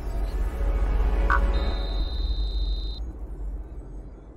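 Logo-intro music sting: a deep bass rumble that swells and then slowly fades, with a short bright ping about a second in and a thin high steady tone for a moment after it.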